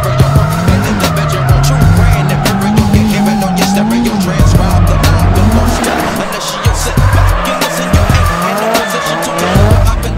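Drift car's engine held high in the revs and rising and falling with the throttle while the tyres squeal in a sideways slide. Music plays underneath.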